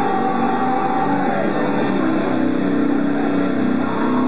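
Slammer by Hamer Explorer-style electric guitar holding ringing notes: a higher note fades out about a second and a half in, and a lower note rings on from about two seconds.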